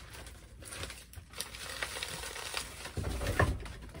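Plastic bags of frozen meat being handled and shifted: crinkling and rustling with light knocks, and a louder thud near the end.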